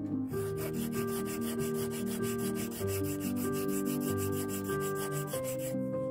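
Flat hand file scraping back and forth across the wood and sterling-silver faces of an octagonal pencil barrel, in quick even strokes of about five or six a second that stop shortly before the end.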